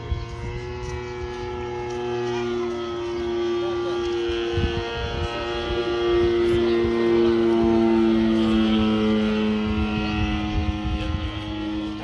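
Engine of a radio-controlled scale model Bücker 131 biplane running steadily as the model flies overhead, growing louder toward the middle and easing off again, its pitch stepping down twice.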